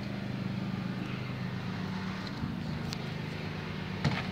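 A motor running with a steady low hum. Its pitch shifts slightly about two and a half seconds in, and there is a faint click near the end.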